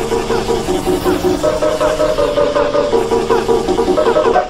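Many overlapping, effect-processed copies of the same cartoon soundtrack playing at once, making a dense, music-like jumble. Held notes step up and down in pitch about once a second, and many short falling chirps run through it.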